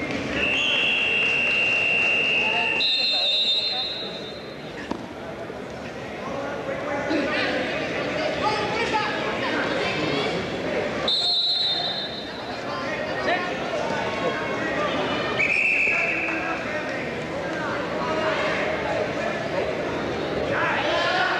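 Whistle blasts in a large gym over a steady din of voices and shouting. One long blast starts near the start and runs almost three seconds, with a higher blast right after it. Another high blast comes a little past the middle, and a short one follows a few seconds later.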